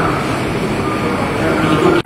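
A person's voice over a steady background of noise.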